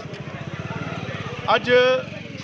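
A small engine running nearby with a rapid, even pulse; a man's voice comes in near the end.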